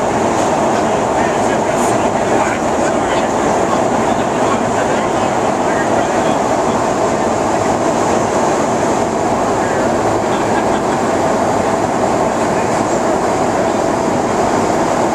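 Loud, steady drone of an aircraft cabin: engine and airflow noise, with no change in level, and voices faintly underneath.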